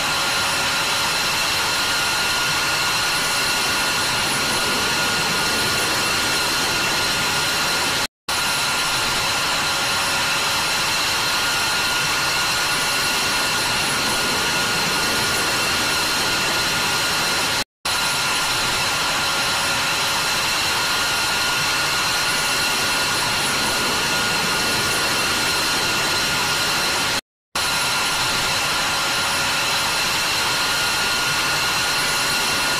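Jet aircraft engine running on the ground: a steady rushing noise with a high-pitched turbine whine over it. It cuts out for an instant three times, about every nine and a half seconds.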